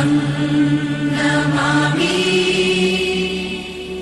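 Devotional background music of a Buddhist chant: long held chanted notes that step up in pitch about halfway through.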